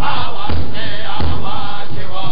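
Pow wow drum group: several men singing together while beating a large shared drum.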